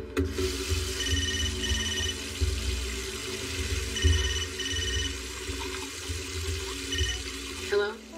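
A steady rush of noise, like running water, under sustained low tones. Over it sound short high electronic beeps in pairs: two pairs about three seconds apart, then a single beep near the end.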